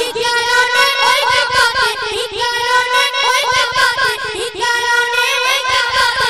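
Boys singing a Bengali gojol, an Islamic devotional song, into handheld microphones. The melody is held on long, wavering, ornamented notes.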